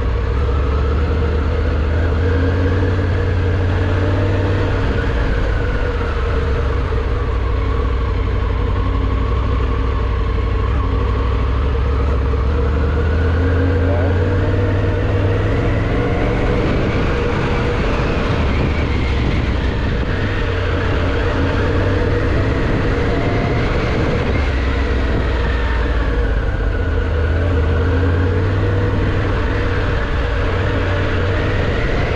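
Triumph Tiger 900 GT's three-cylinder engine running under way, its note rising and falling slowly with the throttle over a heavy, steady low rumble.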